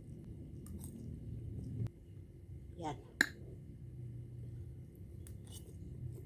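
A person eating a forkful of cellophane noodles, with soft chewing and slurping and a few faint clicks. A single sharp click a little past three seconds in is the loudest sound.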